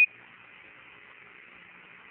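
Steady hiss of the Apollo air-to-ground radio channel. It opens with the tail end of a short, high, steady beep, a Quindar tone, which stops just as the hiss takes over.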